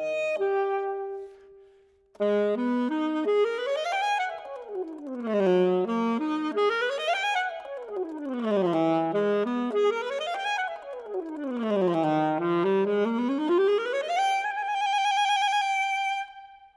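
Unaccompanied soprano saxophone. A held note dies away into a short pause about two seconds in; then fast runs sweep up and down in repeated waves, ending on a long high note with vibrato.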